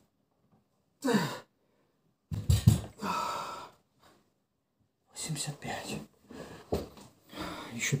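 A man's strained grunt during a bench-press rep with a 40 kg barbell, then a couple of heavy knocks as the bar is set back on the bench's rack, followed by heavy breathing and muttering.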